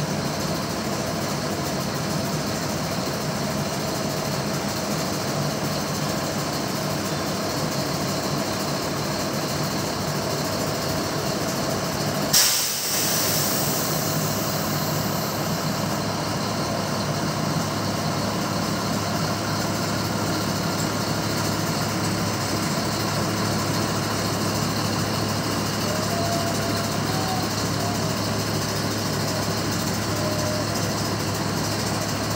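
Diesel engine of a 140-tonne rail-mounted breakdown crane running steadily as the crane slews round. About twelve seconds in comes a sudden loud hiss that tails off over a few seconds.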